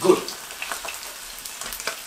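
Sea bass fillets sizzling in olive oil in a frying pan over gentle heat: a steady frying hiss with small scattered crackles.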